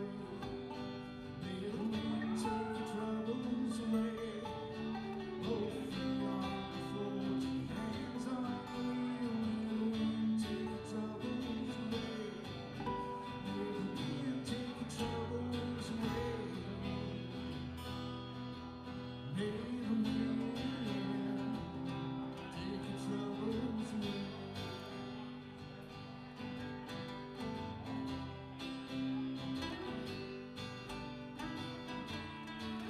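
Two acoustic guitars playing a song together live, strummed and picked.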